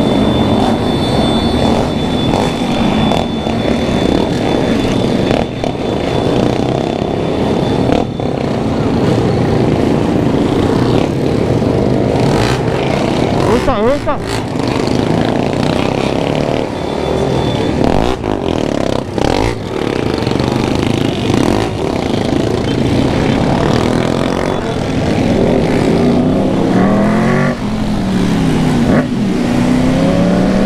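Several motorcycles riding together in a group, their engines running and revving up and down, with wind rushing over the microphone as the bike moves.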